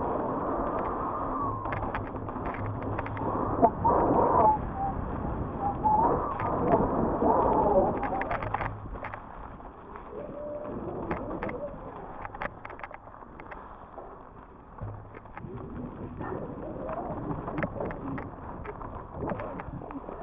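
Mountain bike being ridden fast down dirt singletrack: tyre rumble on the dirt, wind on the microphone and repeated sharp rattles and clicks from the bike over roots and bumps. It is loudest in the first half and quieter after about nine seconds.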